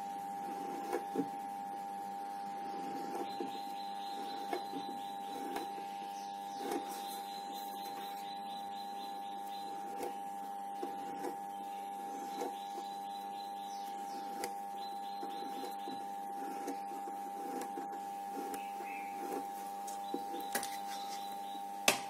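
Light scratching of a pointed metal tool scoring vein lines into a green crepe paper leaf, in repeated short strokes with small clicks, over a steady background hum.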